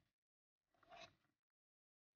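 Near silence, with one faint, brief sound about a second in.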